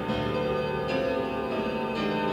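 Live band music: sustained keyboard chords that change about once a second, over a steady low accompaniment.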